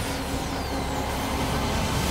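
Film sound effects of a volley of magic spells fired skyward: dense whooshing over a steady low rumble, with a few faint falling whistles in the first second.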